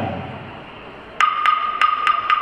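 Opening of a salsa track: after a short lull, sharp wood-block strikes begin a little past halfway, three of them about a third of a second apart.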